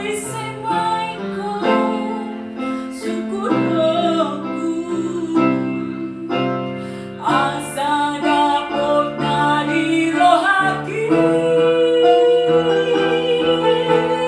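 A woman singing live with a wide vibrato, accompanied by sustained chords on a Techno electronic keyboard. Near the end she holds one long note over the chords.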